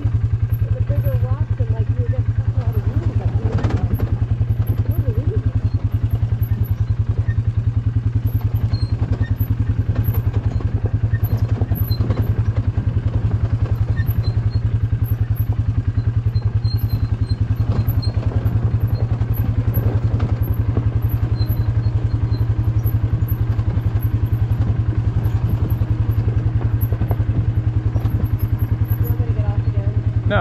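ATV engine running at a steady low speed as the quad crawls over a rocky trail, a constant low drone that barely changes in level.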